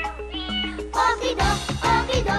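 Theme song of a children's TV comedy: a light, bouncy melody with gliding notes, then a full band with a steady beat comes in about halfway through.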